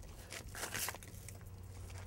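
Faint handling of kite canopy fabric at the leading-edge valve: soft rustling and a few small clicks about half a second in, over a low steady hum.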